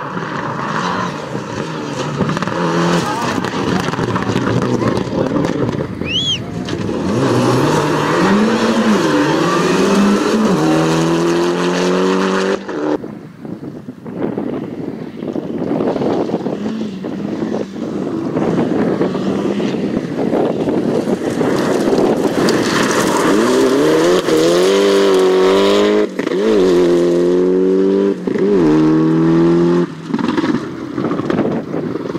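Rally cars at full throttle on a gravel stage, their engines revving hard and climbing in pitch through one gear change after another, with tyre and gravel noise over the top. An abrupt break comes about 13 seconds in. The later pass is a Mitsubishi Lancer Evolution rally car accelerating through the gears.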